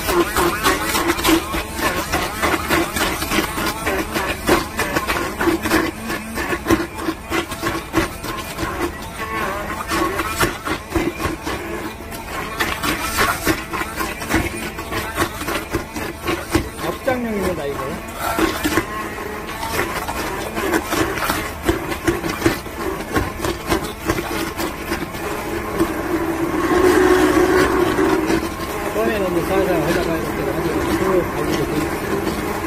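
Electric immersion hand blender running in a stainless steel bowl, its blade chopping raw onion pieces in soy sauce into a purée, with a steady motor hum and constant rapid rattling of onion against the blade and bowl. It gets louder for a couple of seconds near the end.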